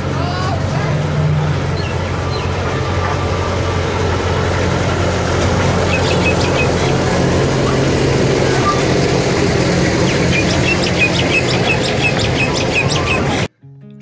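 Amusement-park toy train running past with a steady low engine hum and rumble, with short high chirps over it in the middle seconds. The sound cuts off abruptly just before the end.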